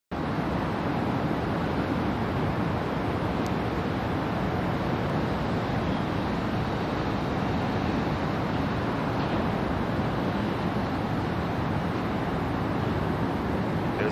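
Steady outdoor background noise, an even rumbling hiss with no distinct events or tones.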